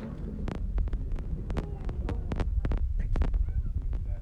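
Irregular sharp clicks and knocks, about three a second, over a steady low rumble: handling noise.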